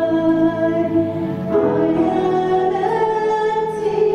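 Live worship band playing a slow song: voices holding long notes over piano and keyboard chords, with a change of chord about one and a half seconds in.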